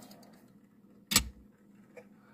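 A single sharp click as a die-cast toy car is set down onto the mount of a small display turntable, a little over a second in, with a fainter click near the end.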